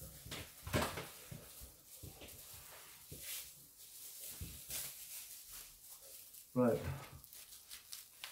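Soft, intermittent crinkling and rustling of a thin plastic strip being twisted into a cord by hand, with a few faint clicks.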